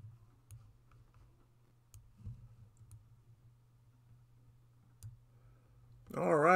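Near silence: faint room tone with a low hum and a handful of small, scattered clicks.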